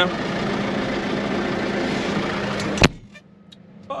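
Tractor engine running, heard from inside the cab as a steady drone with a low hum. Nearly three seconds in it cuts off abruptly with a sharp click, leaving the cab much quieter.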